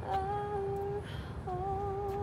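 A woman's voice humming long held notes: the first held for about a second, then after a short break a second note with a slight waver.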